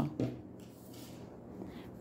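Faint rustle of t-shirt yarn being drawn through crochet stitches with a tapestry needle, with a few soft ticks.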